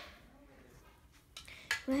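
Quiet room tone, then a few light, sharp clicks or clinks in the second half, followed by a child's voice starting to speak right at the end.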